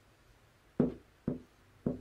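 Dry-erase marker knocking against a whiteboard during handwriting: three short knocks about half a second apart, in the second half.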